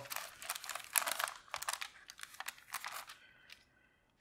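Parchment paper crinkling and rustling in quick irregular crackles as hands handle it and peel soft dough scraps away from cut crackers, dying away about three seconds in.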